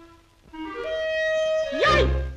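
Cartoon orchestral score: a clarinet plays a few short rising notes, then holds one note. A loud upward swoop comes in just before the end.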